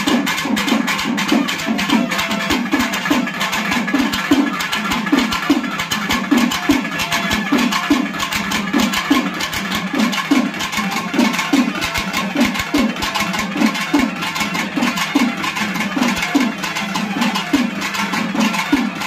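Urumi melam: urumi drums played with a curved stick drawn across the drumhead, giving a wavering groan repeated about twice a second, over rapid sharp drum strokes.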